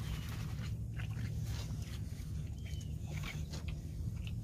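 Steady low hum of an electric trolling motor holding the boat against the current, with a few faint clicks and two short high chirps.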